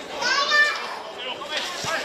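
Footballers shouting and calling to each other on the pitch: a high, strained shout in the first half-second, then further calls near the end.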